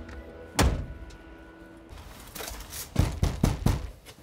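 A single heavy thunk, with a held music tone under it, then four quick knocks on a house's front door near the end.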